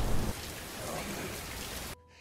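Steady rain, an even hiss with a low rumble at the start, cutting off abruptly near the end.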